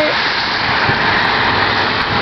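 A car passing on a wet road, its tyres hissing, over a steady roadside hiss.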